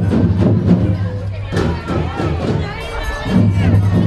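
Music with a heavy bass line, with the chatter and voices of a crowd over it.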